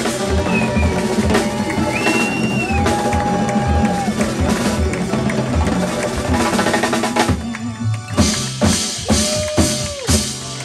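A jazz quintet playing live: drum kit, congas, electric bass and electric guitar under long held notes. About seven seconds in, the full sound drops away to a run of separate sharp hits on drums and percussion.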